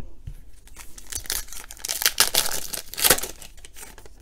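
A foil trading-card pack wrapper being torn open and crinkled: a run of crackly rips starting about half a second in, the sharpest around two and three seconds.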